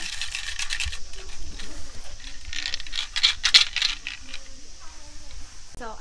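A hexagonal omikuji fortune box being shaken, its numbered sticks rattling inside in two bouts: one in the first second and a longer, louder one from about two and a half to four seconds in. The shaking draws a numbered fortune stick out of the box.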